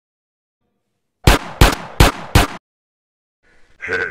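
Four gunshot sound effects in quick succession, about a third of a second apart, each a sharp crack with a short tail, starting a little over a second in.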